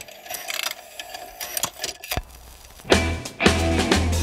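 Cartoon jukebox mechanism whirring and clicking as it loads a record onto the turntable, then, about three seconds in, a rock and roll song starts with a loud, steady beat.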